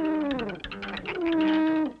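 Cartoon sound effect of a brass horn blowing musical notes as the dragster starts. The notes slide down in pitch, and the last one is held for most of a second before stopping near the end.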